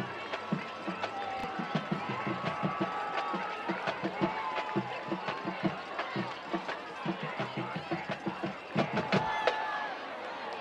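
Crowd noise in a high school football stadium, with long held horn notes and a quick, uneven run of drumbeats from a band in the stands.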